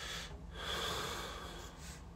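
A man breathing close to the microphone in a pause in his speech: a short breath at the start, then a longer breath lasting over a second from about half a second in.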